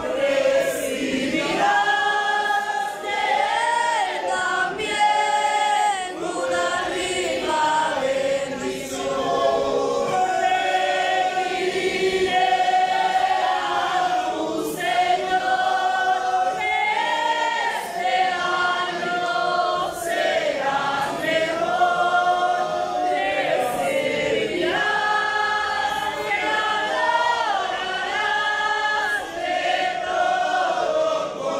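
A church congregation singing a hymn together, many voices at once, with a melody that rises and falls and no clear instrumental bass.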